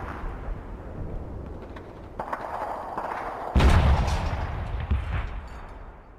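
Gunfire and explosions from a war video game, with a heavy boom about three and a half seconds in, dying away at the end.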